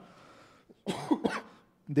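A man's short cough about a second in, in a pause between spoken phrases.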